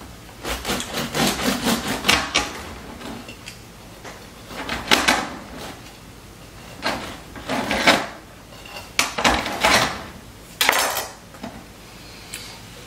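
A knife sawing back and forth through the crust of a baked einkorn sourdough loaf, in about five bursts of rasping strokes with short pauses between them.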